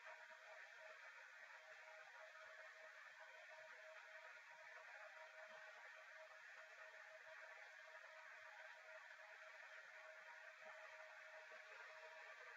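Near silence: a faint steady hiss with a thin steady tone underneath.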